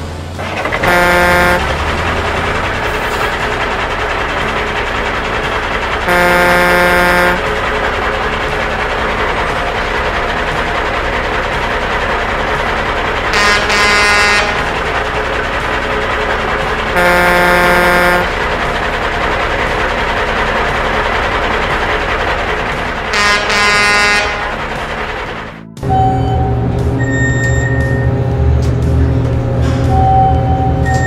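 Truck air horn honking five times, each blast about a second long, over steady truck engine noise. At about 26 s this gives way to music.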